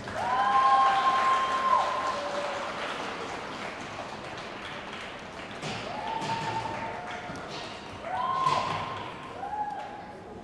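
Spectators applauding as a figure skater takes the ice. Through the clapping come long, high-pitched cheering calls from a few voices: one near the start, and more around six seconds, eight seconds and just before the end.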